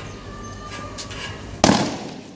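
A single loud bang about one and a half seconds in, with a brief ringing tail.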